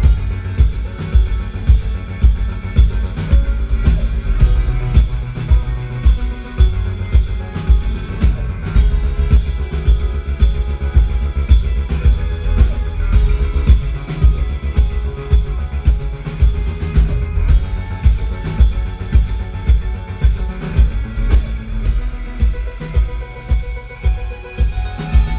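Live electro-pop band playing: stage keyboards, electric guitar and a drum kit, driven by a steady, heavy kick-drum beat. The music dips briefly near the end.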